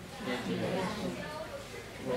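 Faint speech from a quieter voice farther off in the room, in the pause after a question to the class.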